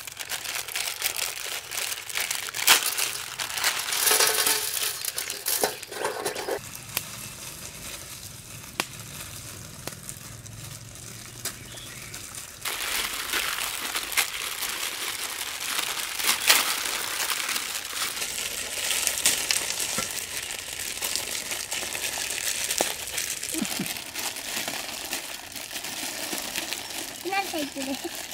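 Plastic Maggi instant-noodle wrappers crinkling and rustling as packets are torn open by hand and the dry noodle blocks taken out. The crackling drops to a lower level for several seconds in the middle, then picks up again.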